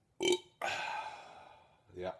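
A man belching after chugging malt liquor: a short, sharp burp, then a longer belch of about a second that trails off.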